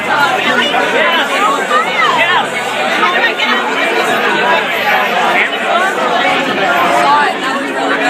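Crowd chatter in a packed bar: many voices talking over one another without a break.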